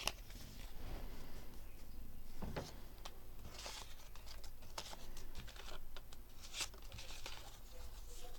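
Paper scraps and a fabric strip being handled by hand: scattered rustles, crinkles and light taps as pieces are picked up and laid down.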